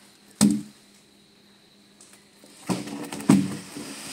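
Thick freshly sawn bayur wood planks knocking against each other and the ground as they are moved: one sharp heavy knock about half a second in, then two more knocks with a short clatter near the end.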